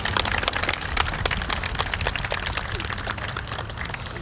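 A small crowd applauding with many overlapping hand claps that thin out towards the end, over a low steady rumble.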